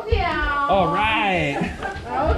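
Wordless, high-pitched vocal sounds with swooping pitch, in overlapping voices.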